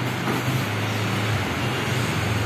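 Aftermarket electric tailgate struts on an MG ZS running as the power tailgate lifts open: a steady low motor hum over a broad background noise.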